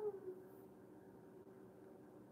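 A woman's short whining groan, falling in pitch, then only a faint steady hum.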